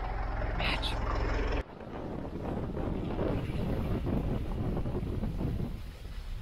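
A steady low hum that cuts off abruptly about one and a half seconds in, followed by the uneven rumble of a moving vehicle with voices over it.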